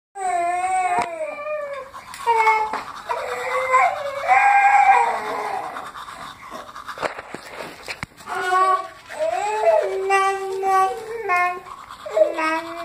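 Babies fussing: a string of high, wavering whines and cries, each a second or so long with short breaks between.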